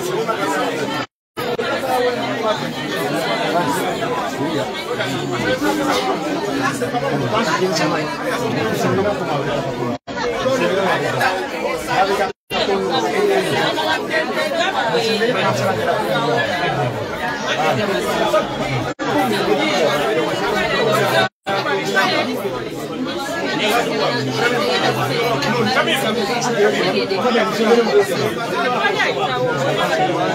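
Crowd chatter: many people talking over one another at once, broken by several brief dead silences where the footage is cut.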